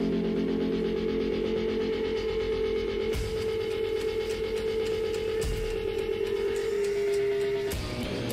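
Live rock band: an electric guitar holds a steady droning note through the amplifiers, and from about three seconds in a drum beat of regular sharp ticks and occasional heavy thumps comes in. The held note cuts off just before the end.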